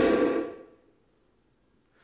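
A man's voice trailing off at the end of a sentence, its echo in a large hall fading within about half a second, followed by a pause of near silence.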